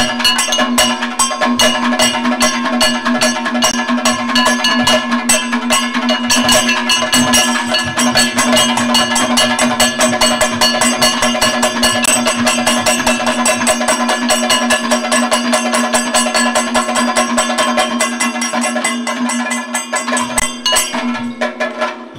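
Kathakali percussion: chenda and maddalam drums played in a fast, dense stream of strokes over a steady held tone. The drumming thins out near the end.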